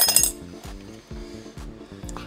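Background music with a steady beat. Right at the start there is a short, bright clink that rings briefly.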